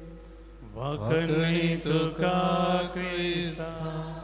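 A man's voice chanting a short liturgical acclamation in held, steady notes, starting a little under a second in, amplified through a microphone.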